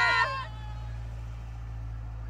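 A long, held vocal call from several voices trails off about half a second in. After it, only the steady low hum of the vehicle's running engine is left.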